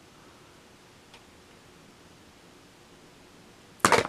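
Faint room tone with a tiny click about a second in, then one short, loud, sharp noise just before the end.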